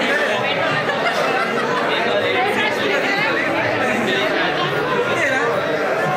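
Crowd of many people talking at once: a steady, unbroken babble of overlapping voices.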